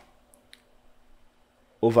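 Two faint computer mouse clicks close together, about a third and half a second in, over a low steady hum.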